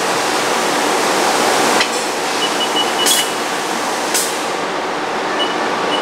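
Steady workshop noise with a knock about two seconds in, then two short sharp bursts about a second apart: a robot-controlled air cylinder pressing and then releasing a CNC lathe's collet foot pedal to close the collet. A faint broken high beep sounds alongside.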